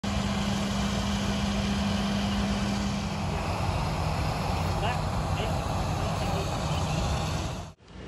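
Steady engine noise on an airport apron: a continuous loud noise with a low hum that drops in pitch about three seconds in. It cuts off suddenly near the end.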